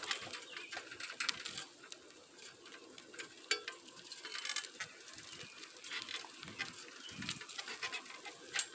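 Bicycle being ridden over asphalt, giving a run of irregular clicks, rattles and short squeaks.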